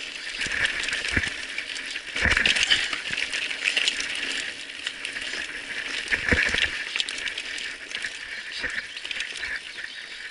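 Mountain bike rattling down a rocky trail: a continuous clatter of the chain, frame and tyres over loose stones, with heavier knocks from bigger rocks about a second in, at around two seconds and at around six seconds.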